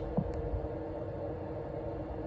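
Steady electrical hum and low rumble from running radio equipment, with a faint tick shortly after the start.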